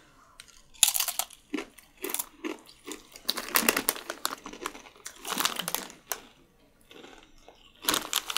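Doritos tortilla chips being bitten and chewed by two people: irregular crisp crunches, with the foil snack bag crinkling as it is handled.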